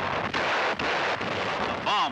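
Battle sound of explosions and gunfire: a dense, continuous din of blasts with a few brief dips in which it breaks off and comes back.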